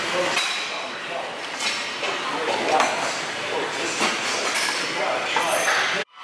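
Weight-stack plates of a seated leg curl machine clinking at regular intervals, about once every second or so, as the weight is lifted and set down.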